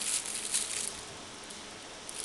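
Brief rustling and handling noise for about the first second, then a low steady background.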